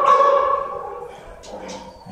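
A dog in the shelter kennels giving one long, steady, high-pitched whine that fades away about a second in.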